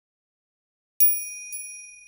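Silence for about a second, then a high metallic bell chime struck twice, half a second apart, ringing on and slowly fading.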